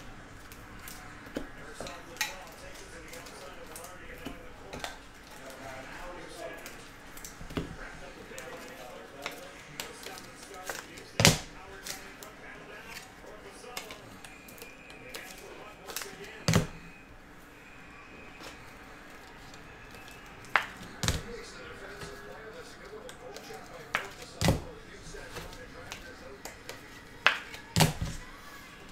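Trading cards and hard plastic card holders being handled, with scattered sharp clicks and taps as the holders knock together and against the table.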